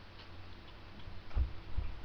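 A few dull knocks and light clicks of small objects being handled close to the microphone, two louder knocks in the second half.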